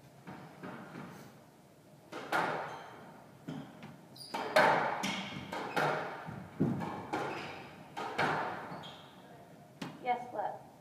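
Squash rally: a run of sharp, echoing strikes of the ball off racquets and the court walls, about a dozen spaced half a second to a second apart, ringing in the enclosed court.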